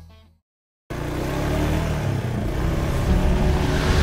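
After the tail of fading music and a short silence, the engines of a UTV and ATVs come in about a second in and run steadily as the vehicles drive along a dirt trail, slowly growing louder.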